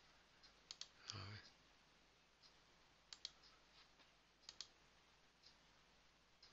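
Faint computer mouse clicks, several in quick pairs, against near silence, with a short low voice sound about a second in.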